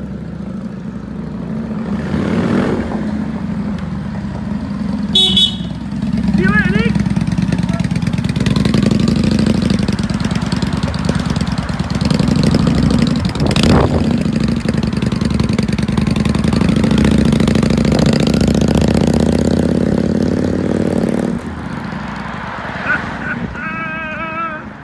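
Cruiser motorcycle engine running loud as it pulls away and rides off, with a short horn toot about five seconds in and a sharp knock midway; the engine sound cuts off suddenly near the end.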